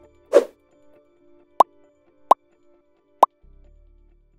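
Animated logo sting sound effects: a short whoosh, then three short pops, each sweeping upward in pitch, spaced under a second apart, with a low bass note coming in near the end.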